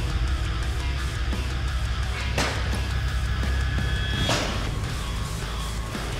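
Heavy rock music with electric guitar, with two sharp slashes of a knife blade cutting across thick leather bags, about two and a half seconds in and again about four seconds in.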